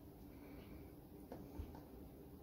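Near silence: a low steady hum, with a few faint soft taps as pieces of salted mackerel are set down on sliced onion in a plastic container.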